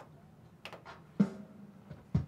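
Electronic keyboard playing a few sparse notes: a faint note, then one fuller chord about a second in that rings on briefly.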